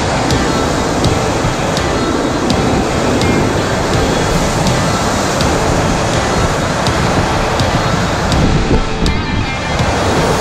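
Loud, steady roar of whitewater as an oar raft runs a big rapid, with music and a light regular beat playing underneath.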